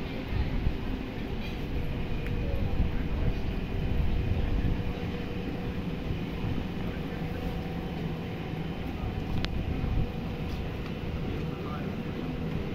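Outdoor street ambience: a steady low rumble with faint voices of people nearby, and one brief high click about nine and a half seconds in.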